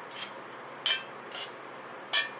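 Steel needle-nose pliers clinking against the thin tinplate bottom of a tuna can as their tips are worked into drilled holes to push the burrs outward: three short metallic clicks, the middle one loudest.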